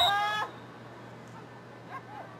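A high-pitched shout held steady for about half a second, then cut off. Faint voices follow in the background.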